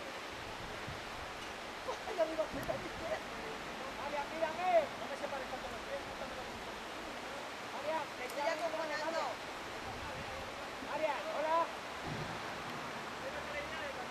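Distant, indistinct voices from people high above, heard in short bursts four times, over a steady rushing background noise.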